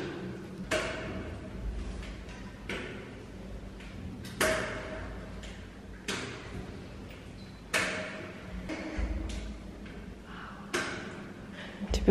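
Forearm crutches and a foot knocking on stone stair steps, one knock about every one and a half seconds as each step down is taken, echoing in a stairwell.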